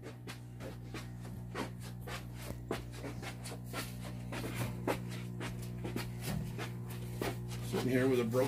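Scattered footsteps and knocks as two men carry a heavy aquarium stand, over a steady low hum.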